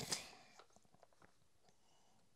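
Near silence: room tone with a few very faint clicks.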